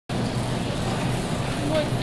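Steady low hum of a supermarket aisle lined with glass-door refrigerated cases, with a voice starting to speak near the end.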